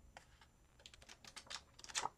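Faint, quick light clicks and taps, getting denser and louder toward the end, from hands handling paper pages and inserts in a ring-bound planner.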